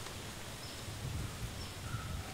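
Steady outdoor background ambience, a low even hiss of rural surroundings, with a few faint short high chirps.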